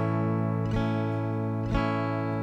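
Open A major chord on an archtop guitar, ringing and strummed again twice, about a second apart.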